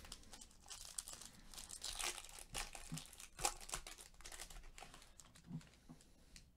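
Foil wrapper of a trading-card pack being torn open and crinkled by hand: a dense run of crackles with one sharp crack about three and a half seconds in.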